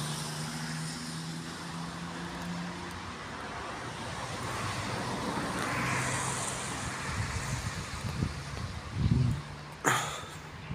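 Outdoor road-traffic noise with a steady low hum, swelling as a vehicle passes about midway. It is followed by low rumbling and a thump and a sharp knock on the microphone near the end.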